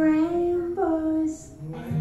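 A woman singing with little backing: a held note, then a short phrase that steps up and back down, ending about a second and a half in. Low instrument notes come back in near the end.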